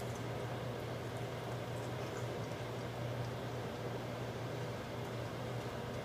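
Steady low hum with an even hiss: indoor room background noise, with a few faint small clicks of people chewing fried fish.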